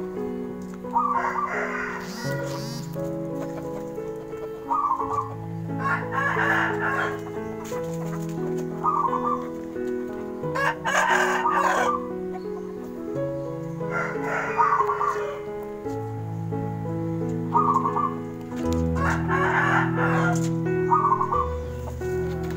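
Rooster crowing and clucking in short bursts about every four to five seconds, over background music with held low notes that change in steps.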